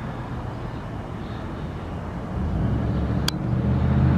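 Street traffic, with a vehicle's low engine hum growing louder through the second half. A single sharp tick sounds about three seconds in.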